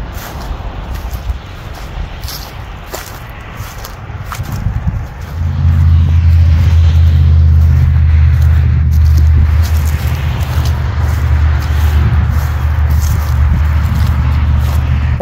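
Outdoor background noise with distant road traffic, then a loud low rumble from about five seconds in that holds steady to the end: wind buffeting the microphone.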